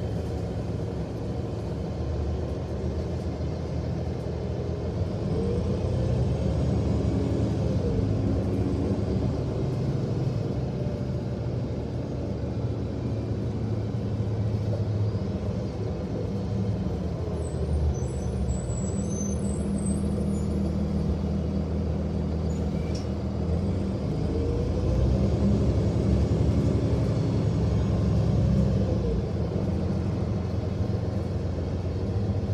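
City transit bus's engine and drivetrain running as heard from inside the bus while it drives slowly and turns, a steady low rumble. A whine rises and then falls twice as the bus speeds up and slows.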